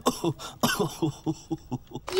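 A low adult voice in a quick string of short bursts, about four or five a second, a mix of coughing and chuckling from someone who has just come down a sooty chimney.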